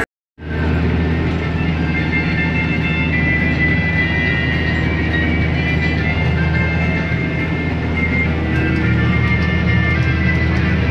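Diesel engine of a Jacto Uniport 3030 self-propelled crop sprayer running steadily under load, heard from inside the cab as a deep, even drone with a faint high whine over it. It starts abruptly a moment in.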